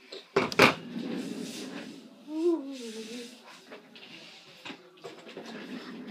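Two sharp knocks about half a second in, then soft rustling handling noise of things on a desk, with a brief hummed voice sound around two and a half seconds in.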